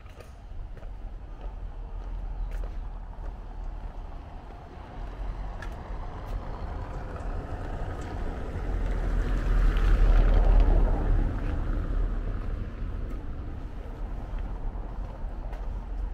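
A motor vehicle passing by: a rumble that builds over several seconds, is loudest about ten seconds in, then fades away.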